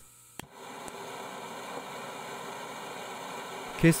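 A lighter clicks about half a second in and the A3 International B10 concentrated-flame burner lights, running on gas from a cassette can with air from a pump. It then gives a steady hiss as the gas-air mix burns.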